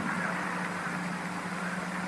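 Steady background hum and hiss of an old 1950s radio broadcast recording, with no other event.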